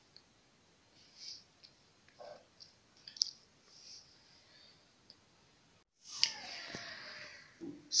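Faint clicks and taps from a hand handling an electric blender's plastic base and cord on a stainless steel drainboard, with one sharper click about three seconds in. Near the end, after a brief break, there is a steady hiss lasting over a second.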